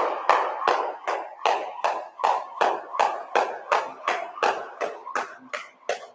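Jump rope skipping single unders: the rope slapping the floor and shoes landing with each jump, in a steady rhythm of about three strikes a second.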